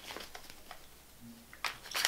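Quiet pause in a woman's speech, with faint rustles and small clicks, a brief low hum of her voice about halfway, and an intake of breath near the end.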